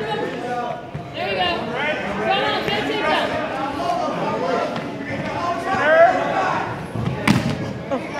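A single loud thud, about seven seconds in, of a wrestler being taken down onto the gym mat, over steady talking and calling from people around the mat.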